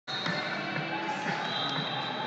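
Large gym hall ambience at a wrestling tournament: distant voices and a few scattered thuds of feet and bodies on wrestling mats, with a faint steady high tone underneath.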